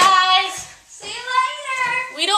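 A young girl singing loudly in a high voice, two drawn-out phrases one after the other.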